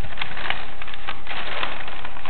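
Paper rustling in quick, irregular crackles as a sheet of paper is twisted by hand into a cone.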